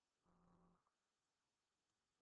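Near silence: room tone, with one very faint, short, pitched hum lasting about half a second, a quarter second in.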